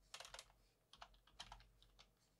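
Faint computer keyboard typing: a quick run of keystrokes in the first half second, then a couple of single key taps.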